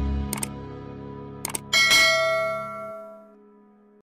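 Subscribe-button sound effect: two short clicks, then a bright bell ding about halfway in that rings and fades away. Under it, the last held chord of the rock backing track dies out.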